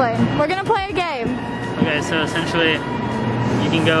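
People talking, with music playing underneath and a steady background hum.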